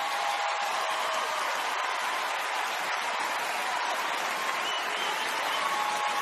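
Large audience applauding and cheering steadily, with voices calling out over the clapping.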